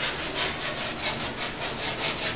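Rapid, rhythmic scraping strokes of hand work on a surface, about seven strokes a second, steady in level.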